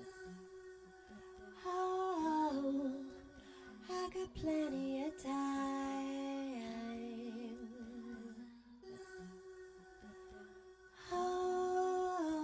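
A woman singing a wordless, hummed melody into a handheld microphone over a soft, steady backing drone. There are three phrases. The first steps down in pitch. The middle one ends on a long held note with vibrato.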